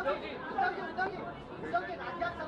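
Several voices talking over one another: chatter in a press room.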